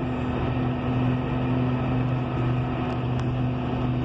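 John Deere 6150R tractor's diesel engine and drivetrain running steadily at road speed, heard inside the cab: a steady low hum with a second, higher steady tone. The AutoPowr transmission's eco function has brought the engine down to about 1500 rpm for cruising at over 40 km/h.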